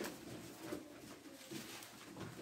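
Faint pigeon cooing, with a light tap at the very start.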